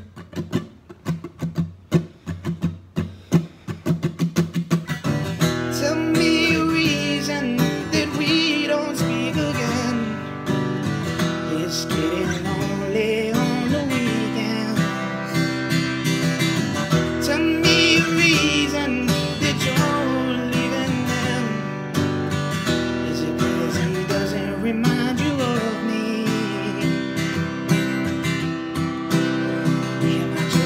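Steel-string acoustic guitar strummed as the opening of a new song: single, spaced strokes for about the first five seconds, then steady continuous strumming and picking.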